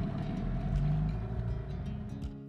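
Small outboard motor on an inflatable dinghy running steadily under way, a low hum with a steady drone above it.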